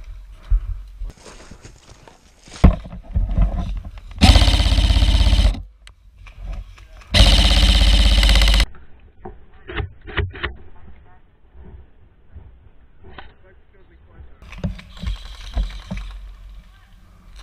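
Two full-auto bursts from an airsoft M4 electric rifle (VFC Avalon VR16 Saber Carbine AEG), each about a second and a half long, the gearbox cycling as a fast, even rattle. A few light clicks follow the second burst.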